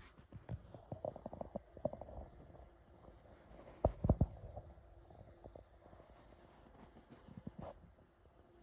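Handling noise on a handheld camera's microphone: scattered soft knocks and clicks, with a louder low rumbling thump about four seconds in.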